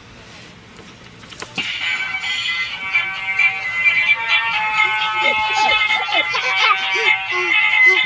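Musical birthday greeting card playing its electronic song through its tiny speaker, starting with a click about a second and a half in and carrying on steadily. The card works again after a broken contact inside was resoldered.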